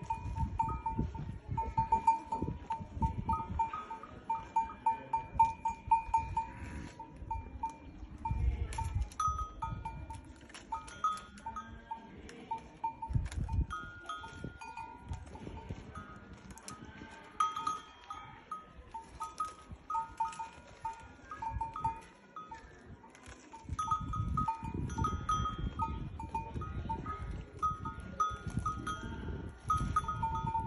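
Metal neck bells on camels clanking in quick irregular runs as the animals move their heads, ringing at two pitches, one a little higher than the other. Low rumbling noise comes and goes underneath.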